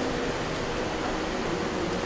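Steady room noise of a classroom: an even hiss and hum with no distinct events.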